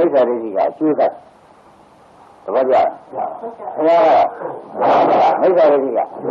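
A Buddhist monk preaching in Burmese, an old recording with a short pause about a second in, where only faint hiss remains.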